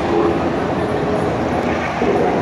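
Steady din of a large crowd in a mall atrium, a dense even wash of many voices and movement with no single voice standing out.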